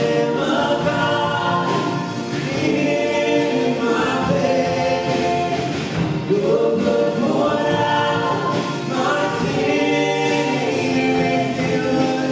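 Live contemporary worship song: a female lead singer with many voices singing along, over a band of guitars, piano and drums. The sustained sung phrases rise and fall without a break.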